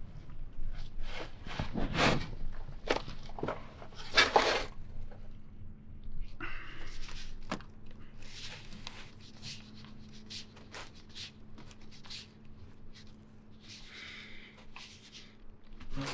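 Knocks, scrapes and rustling as a drain pipe is worked loose by hand under a bus, with two louder knocks about 2 and 4 seconds in. A faint steady hum runs underneath.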